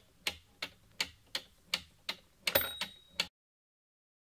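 Clock ticking, sharp even ticks about three a second, with one louder tick carrying a brief high ring a little past halfway; the ticking stops abruptly after about three seconds.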